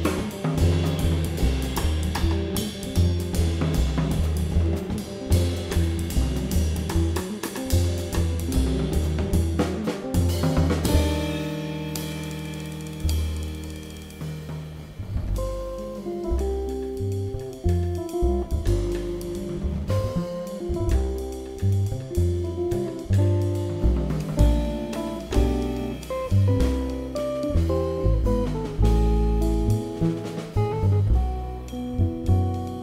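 Live jazz trio of electric guitar, upright double bass and drum kit playing. Busy drumming with cymbals runs for about the first ten seconds, then the drums drop back under a held chord, and guitar and bass lines carry on over lighter drumming.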